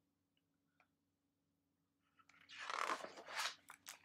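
Near silence, then a picture book's paper page being turned: a rustle about two and a half seconds in, followed by a few light taps and clicks of handling near the end.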